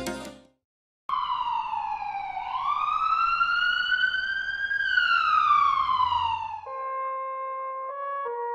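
Ambulance siren: one slow wail whose pitch falls, rises, then falls again over about five seconds. Music with held notes comes in near the end.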